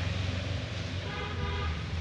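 Steady low hum of road traffic, with a vehicle horn held for over a second in the middle.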